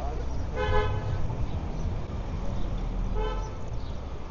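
A car horn gives two short toots about two and a half seconds apart, the first a little longer, over a steady low rumble of street traffic.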